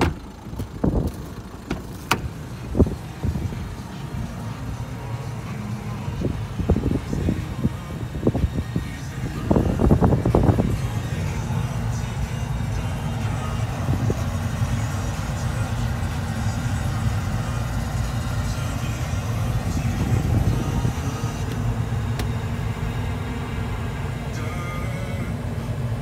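Knocks and thumps of handling in and around a car during the first nine seconds, then the Citroen C4 Grand Picasso's engine starting about ten seconds in and idling steadily.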